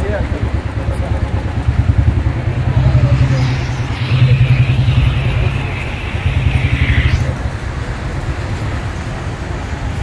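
Motorcycle engine running close by, a low steady pulsing that grows louder for a few seconds, with people's voices over it.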